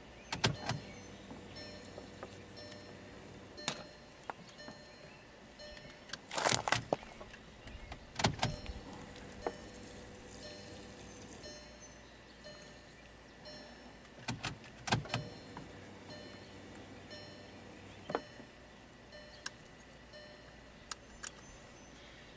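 Volkswagen in-tank electric low-pressure fuel pump running with a faint steady whir during a key-on prime, stopping about halfway through, with scattered clicks and knocks from handling the fuel pressure gauge and its hose. The pump spins without building pressure, reaching only around 15 PSI where about 50 is needed: either a weak pump or one sucking in air and cavitating.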